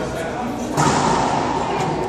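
Racquetball rally in an enclosed court: the ball thuds off the walls and off racquets, the court echoes, and people talk in the background. The sound grows noticeably louder about three-quarters of a second in.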